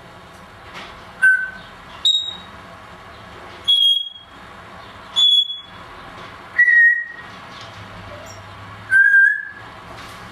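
Timneh African grey parrot whistling six short, clear single notes, a second or more apart and at different pitches, some high and some lower; the last note is held a little longer.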